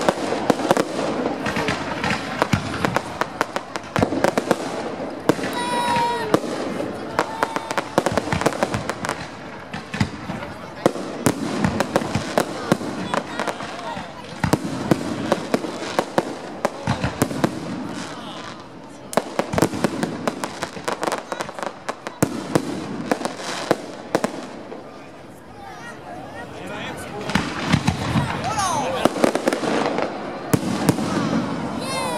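Aerial fireworks display: a dense, continuous run of bangs and crackles from shells bursting overhead, thinning out for a while in the second half and building up again near the end.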